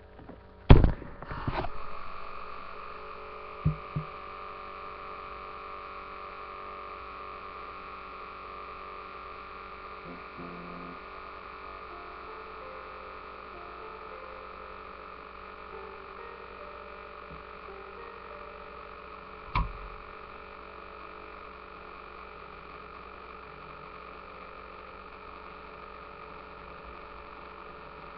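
Two loud knocks about a second in, then a steady electrical hum with a couple of small clicks and one sharper knock near two-thirds through.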